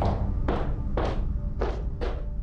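A woman's high-heeled footsteps on a hard tiled floor, four sharp steps about two a second, over a low background music bed.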